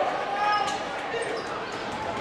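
Crowd noise in a packed gymnasium, with a basketball bouncing on the hardwood court, heard as a few sharp knocks during play.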